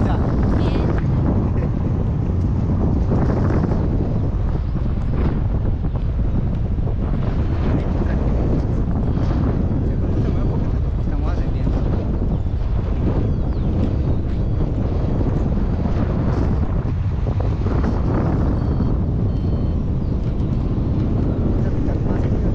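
Steady, loud wind rushing over the microphone of a handheld camera on a tandem paraglider in flight, a continuous low rumble of buffeting air.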